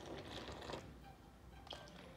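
Water poured from a plastic measuring jug into flour in a metal mixing bowl: a faint, soft trickle, with a small click near the end.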